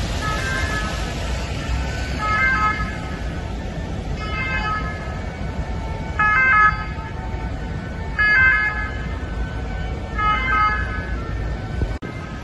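A siren sounding in short pitched calls that repeat about every two seconds, over a steady low rumble.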